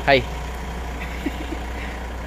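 A vehicle engine idling steadily, a low, even hum, with a short spoken syllable at the very start.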